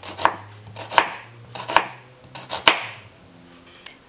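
Kitchen knife slicing an onion into thin strips on a wooden cutting board: four crisp cuts, each ending in a knock of the blade on the board, a little under a second apart, then a quieter stretch near the end.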